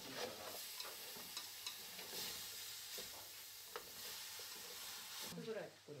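Chopped vegetables and meat sizzling as they are stir-fried in a metal pot over a gas flame, the first stage of making tonjiru (pork miso soup). Chopsticks and a wooden spatula scrape and click against the pot now and then. The sizzling cuts off suddenly near the end.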